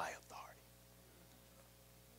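A man's voice ends a spoken word in the first half second, then near silence: room tone with a faint steady hum.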